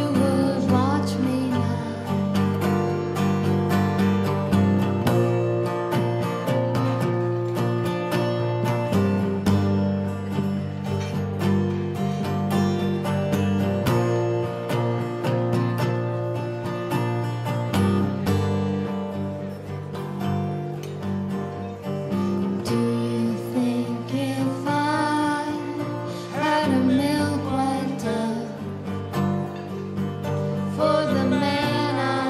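Live acoustic performance: acoustic guitars strumming and picking through an instrumental stretch of a folk song. A singing voice comes in again near the end.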